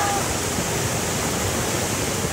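Fast, turbulent river water rushing over rocks, a steady, even rush; the water is milky with marble-quarry slurry.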